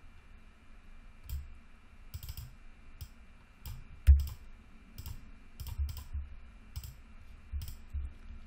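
Computer keyboard keystrokes and mouse clicks, irregular and spaced apart, with one sharper click about four seconds in.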